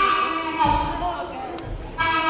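Blues harmonica cupped against a vocal microphone, playing long held notes that bend slightly, with a few low thumps underneath.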